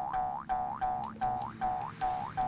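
A repeating electronic tone, each note a short held pitch that swoops upward at its end, about three a second, like a cartoon boing or an alarm's whoop.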